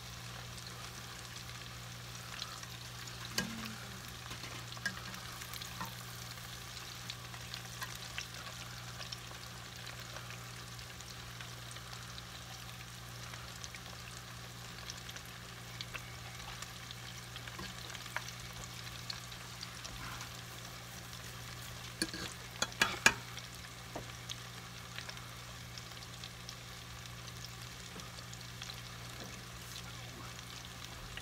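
Breaded onion rings deep-frying in hot oil: a steady sizzle with scattered small pops over a steady low hum. A short run of sharp clicks, the loudest sounds, comes about three-quarters of the way through.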